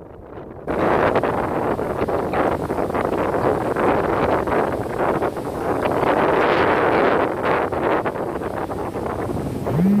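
Rough sea surf breaking on the shore, mixed with strong wind buffeting the microphone. It starts in earnest about a second in, after a brief lull, and surges and ebbs throughout. At the very end comes a short hum from a voice.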